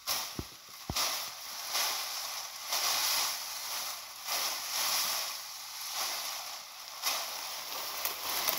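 Rustling and swishing of a large armful of cut tall thatch-grass stalks being gathered and handled, in repeated swells about a second long.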